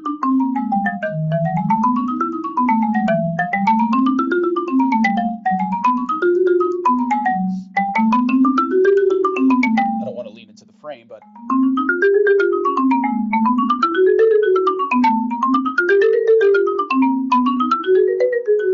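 Marimba with wooden bars, struck with yarn mallets, playing rapid major scales up and back down about once every two seconds. Each run starts on a new note, working through the major keys, with a short break about ten seconds in.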